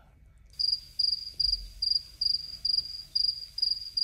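A cricket chirping: a high, even chirp repeated about twice a second, starting about half a second in.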